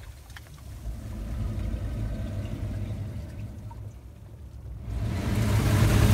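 Seawater washing in and out of a narrow gap between shoreline rocks, swelling again near the end as a wave surges in.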